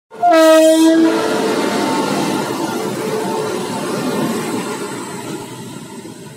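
Indian Railways WAP-7 electric locomotive sounding its horn for about a second, then the rumble of the locomotive and train rolling past at speed, slowly fading.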